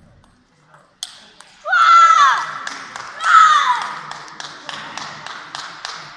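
A sharp table-tennis ball click, then two loud high-pitched shouts that fall in pitch, about a second and a half apart, followed by a run of sharp claps, about three a second.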